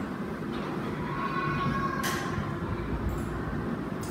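Steady low background rumble of room noise, with a faint far-off voice about a second in and a brief hiss at about two seconds.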